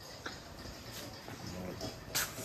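Faint rustling of printed cloth being handled and moved, with a few soft taps.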